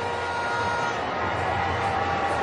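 Steady crowd hubbub at a cricket ground, an even murmur with a few faint held tones.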